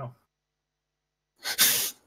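A sharp, noisy burst of breath from one person, close on a headset microphone, lasting about half a second near the end, after a stretch of dead silence.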